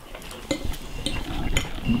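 A few light clicks and clinks of hard objects being handled, over a low rumble that grows louder; a man's voice begins right at the end.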